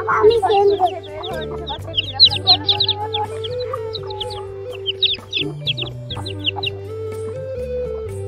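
Newly hatched chicks peeping: many short, high cheeps, some in quick runs, over background music with sustained low notes.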